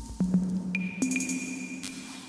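Eurorack modular synthesizer playing a semi-generative ambient electronic patch: low notes that start sharply and ring on, one just after the start and another about a second in, with a high steady tone entering under a second in and a short burst of hiss near the end.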